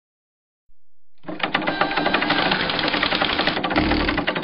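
Rapid, even mechanical clattering that starts about a second in and runs steadily for about three seconds.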